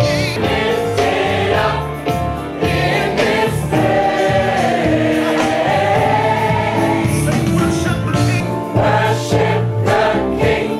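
A large choir singing a gospel song together, holding long sung notes over a steady low line.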